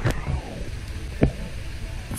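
Low, steady rumble of a handheld camera being carried on a walk, broken by two sharp knocks about a second apart, the second louder.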